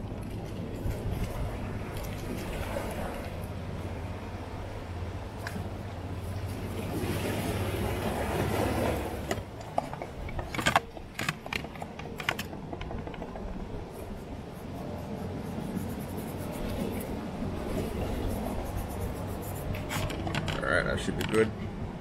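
Handling of raw fish in an aluminium bowl: a few sharp clicks and knocks about ten to twelve seconds in as a fish is lifted, over a low steady outdoor rumble.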